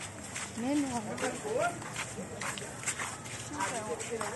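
Several people's voices talking in a crowd, with a laugh about half a second in and scattered short clicks.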